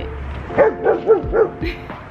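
A dog barking, a quick run of about four barks about half a second in, as it runs up to other dogs in play.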